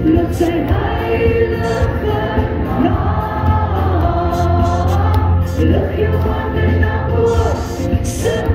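A woman singing a gospel worship song into a microphone over backing music with a steady, strong bass and choir-like backing voices.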